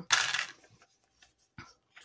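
A short rustling swish of paper being handled on a tabletop, followed by a faint tap about one and a half seconds in.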